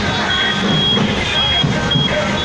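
Chatter from a walking crowd mixed with slow motorcycle and scooter traffic, with a high electronic beep repeating in short pulses about once a second.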